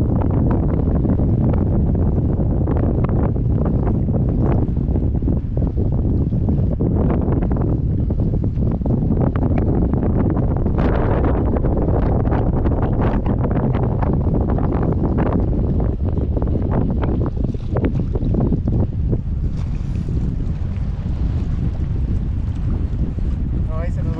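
Steady wind buffeting an action camera's microphone, with choppy water slapping against the boat's hull in scattered short splashes.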